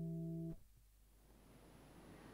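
Cort AC160CFTL nylon-string classical-electric guitar, heard line-out through its Fishman pickup, with played notes ringing and slowly fading. The notes are stopped suddenly about half a second in.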